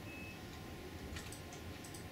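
Computer mouse clicking: a few quick clicks about a second in and another near the end, over a steady low hum.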